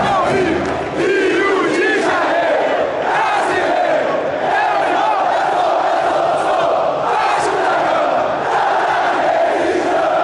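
A large section of Brazilian football supporters chanting in unison, loud and sustained, with a brief dip just before a second in.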